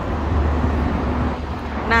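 City road traffic noise: a steady low rumble of passing vehicles.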